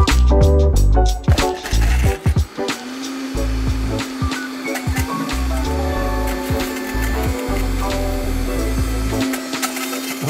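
Vitamix blender grinding quartered apples into pulp, its motor humming steadily from about three seconds in, under background music with a steady beat.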